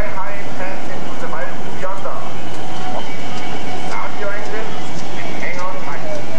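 Indistinct voices of several people, some high-pitched, calling and talking in short snatches over a loud, steady background noise.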